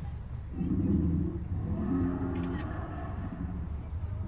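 Growl played for the Tyrannosaurus rex figure: a deep, pitched growl starting about half a second in and lasting about two and a half seconds. Beneath it runs a steady low rumble from the car.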